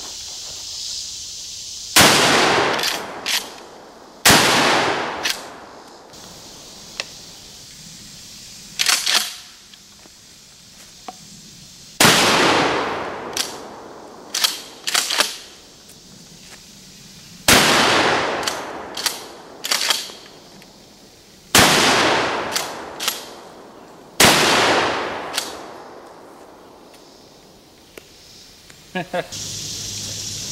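Six 12-gauge shotgun blasts from a Remington 870 pump-action, spaced irregularly a few seconds apart, each echoing away over a second or two. Quieter, sharp clacks between the shots come from the pump action being cycled. A short laugh comes near the end.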